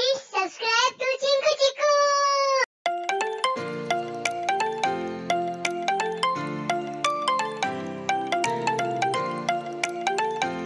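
Outro jingle: a short vocal phrase with sliding pitch ends on a held note. Then, from about three seconds in, a brisk tune of quick struck notes runs over a lower bass part.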